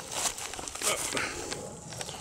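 Rustling and footsteps in dry grass and stubble close to the microphone, in irregular bursts, with a man's short 'ja' about a second in.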